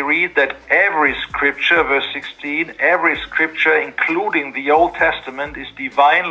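Only speech: a man talking steadily, his voice thin and cut off above the mid-treble like sound over a call connection.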